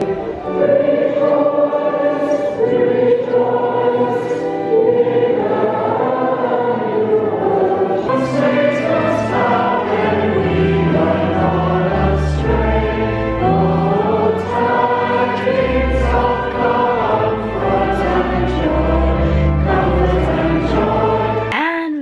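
A congregation singing a Christmas carol together, many voices holding long sung notes, with deep low notes underneath from about halfway through. The singing cuts off suddenly near the end.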